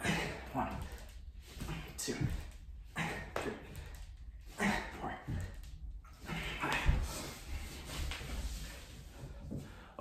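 A man breathing hard in short bursts about once a second while doing shoulder-tap push-ups, picked up close on a clip-on mic, with soft thumps of hands on a laminate floor and one heavier thump about seven seconds in.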